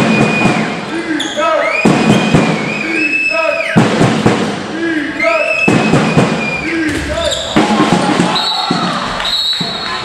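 Indoor handball in play: the ball bouncing and slapping on the hall floor and players shouting to each other, all echoing in the sports hall, with several high squeaks lasting about a second each.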